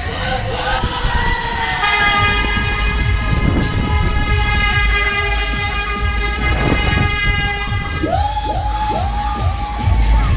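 A long, steady horn blast lasting about six seconds, starting about two seconds in, followed near the end by four quick rising siren whoops, over a low rumble from the spinning fairground ride.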